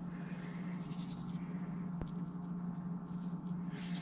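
A salt or pepper shaker being shaken over raw meat in a stainless steel bowl: a faint, quick patter of grains, with a single click about two seconds in, over a steady low hum.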